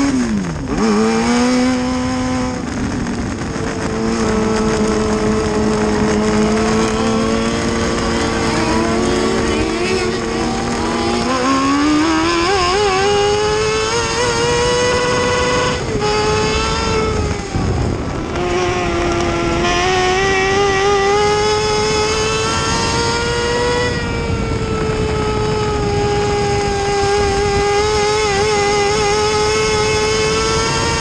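Mini late model dirt race car's engine heard from inside the cockpit, holding a steady low pitch for several seconds, then rising as the car accelerates. The pitch dips briefly a few times where the throttle is lifted.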